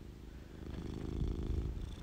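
Siamese cat purring close up, a low, fine pulsing rumble that grows louder from about half a second in.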